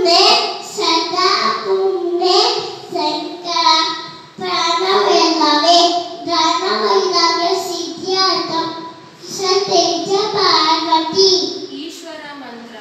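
A young boy chanting a Sanskrit shloka in a sing-song melody, with short breaks for breath about four and nine seconds in.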